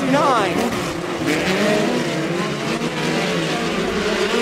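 Several dirt-track midget race cars running at high revs in a pack, their engine notes overlapping. Early on one engine's note drops sharply as the car goes by or lifts for the turn, then the layered engine sound carries on steadily.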